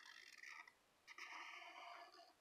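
Near silence with the faint sound of a felt-tip marker being drawn across sketchpad paper, in two short strokes.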